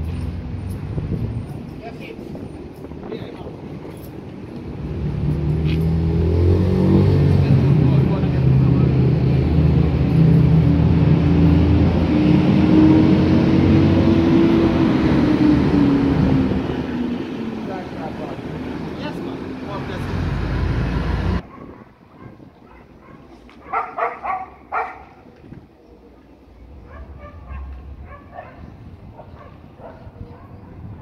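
A motor vehicle's engine passing close by on the street: it swells over a few seconds, with a low hum and a tone that rises and falls, then fades away. About two-thirds of the way through the sound cuts off abruptly to quieter street noise with brief bursts of voices.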